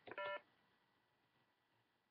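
A single short electronic beep, several steady tones sounding together for about a fifth of a second, just after the start, followed by near silence.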